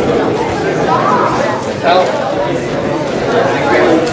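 Chatter of a roomful of people talking at once, many overlapping voices with no one speaker standing out.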